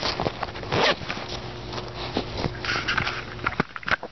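Zipper on a fabric book bag's front pocket being pulled open in several short rasps, with rustling and handling of the bag.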